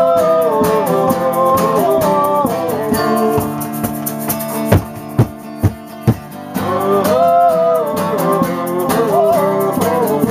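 Acoustic guitar strummed steadily in a live band jam, with a wavering, bending lead melody line over it that fades for a few seconds mid-way and returns. About five seconds in, four sharp thumps land within a second and a half.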